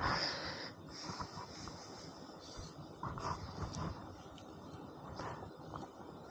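A person's loud exhale close to the microphone at the start, fading within the first second. After it comes a quiet outdoor background with a few faint short sounds.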